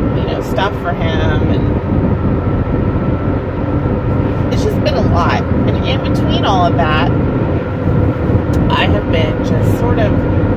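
Road and engine noise inside a moving car's cabin at highway speed: a steady rumble with a faint hum.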